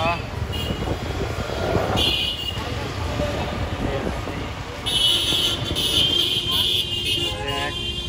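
Busy street traffic heard from a motorbike: engines and road noise, with vehicle horns honking, the longest horn blast about five seconds in.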